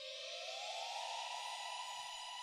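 A Sunrizer synth note played from a ROLI Seaboard Block, bent smoothly up one octave over about a second as the finger slides along the keywave, then held. The bend now spans exactly 12 semitones, because a KeyStage translator rescales the Seaboard's 24-semitone pitch-bend range to the synth's 12-semitone range.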